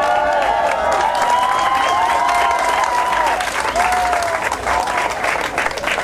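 Crowd applauding, a dense steady clapping that thins near the end.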